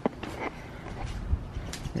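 A few light clicks and knocks, with a dull low thump past the middle.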